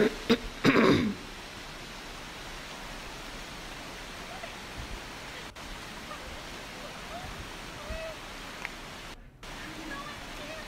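A cough, then a steady rushing noise of running water, with a brief dropout about nine seconds in.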